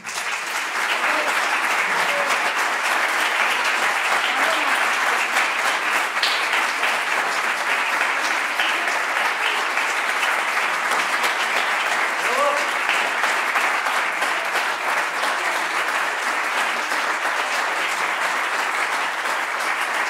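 Audience applauding, breaking out at once and holding steady.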